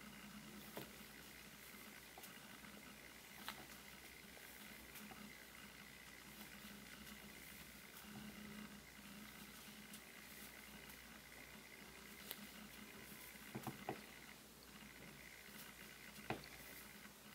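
Near silence: faint room tone with a few soft ticks from a metal crochet hook working yarn, one about a second in, one about three and a half seconds in, and a small cluster near the end.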